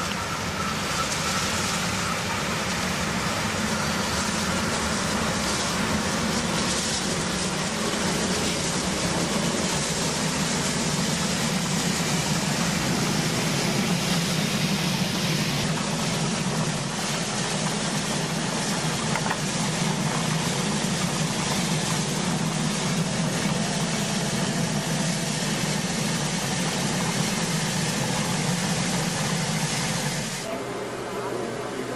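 Full-size steam locomotives running past on the main line: a steady low rumble with hiss. The sound changes abruptly a little past halfway, where a second train takes over.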